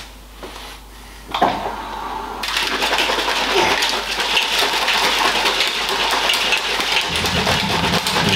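Protein shaker bottle of water and whey powder being shaken hard, a rapid, continuous rattling slosh that starts about a second and a half in.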